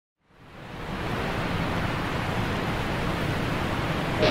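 Steady rush of falling water from a waterfall, fading in over the first second.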